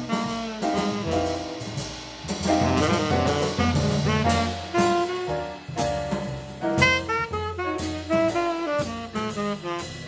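Live jazz quartet: a saxophone plays a moving melodic line over piano, double bass and drums, with cymbal and drum hits throughout.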